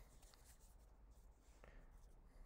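Near silence: quiet room tone with a few faint rustles of desk handling.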